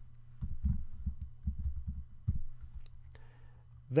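Typing on a computer keyboard: a quick, irregular run of key clicks that stops a little over halfway through.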